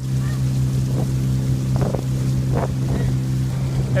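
Motorboat engine running at a steady, unchanging pitch, with water splashing and wind on the microphone.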